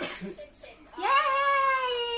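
A cough, then about a second in a child's voice begins a long, high-pitched drawn-out wail held on one steady note.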